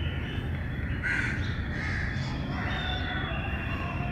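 A bird calling outdoors, a few short, harsh calls about a second apart, over a steady low background rumble.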